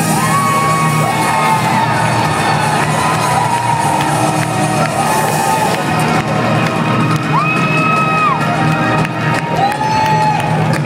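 Live band music playing loudly in a concert hall, with a crowd cheering and whooping over it.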